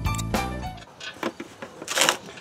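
Background music with bass and piano-like notes that cuts off a little under a second in. It is followed by a few sharp metal clanks from the steel barrel smoker's lid being handled, the loudest near the end.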